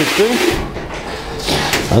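Cloth being rubbed over the face of a steel brake drum, a rough hissing scrub that comes in two stretches, wiping on rust remover. A short laugh at the very end.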